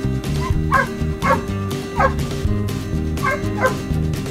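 A dog yipping about five times, short high calls that fall in pitch, in two groups, over background music with a steady beat.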